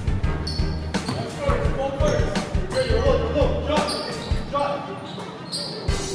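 Basketball game sounds on a hardwood gym floor: the ball bouncing in repeated sharp knocks, with short sneaker squeaks. Players' voices call out through the middle of the stretch.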